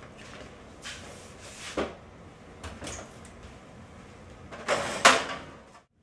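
A kitchen oven being loaded: a few short knocks and scrapes of a metal sheet pan and the oven door, the loudest a clatter about five seconds in, then the sound cuts out just before the end.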